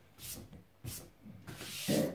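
A hand brushing across the fabric surface of a large cloth gaming mouse mat in a few short strokes. A louder thump comes near the end.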